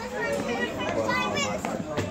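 Young children's voices, talking and calling out at play.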